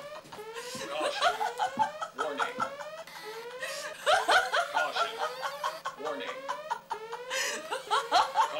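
A security alarm sounding in repeated rising sweeps, with people snickering and laughing over it.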